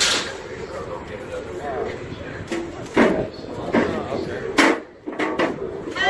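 Faint voices of people around, with two sharp knocks, about three and four and a half seconds in.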